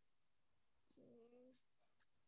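Near silence, broken about a second in by one faint pitched sound about half a second long.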